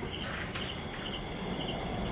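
Night insects chirping: a steady high trill with repeated pulsed chirps about twice a second. A short rustle of the nylon hammock strap being handled comes just after the start.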